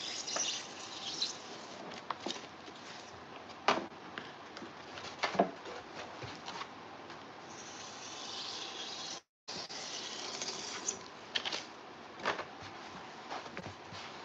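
Hot knife cutting foam board, with scattered light clicks and knocks as the board is handled on the cutting mat. There is a soft rustling hiss about halfway through, and the sound drops out completely for a split second just after it.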